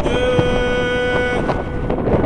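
A voice singing one long held note that ends about one and a half seconds in, with wind rumbling on the microphone.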